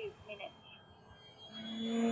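Electric motor and propeller of an XFLY Glastar RC airplane, a faint high whine that is joined about one and a half seconds in by a steady pitched hum growing louder as the plane comes in close.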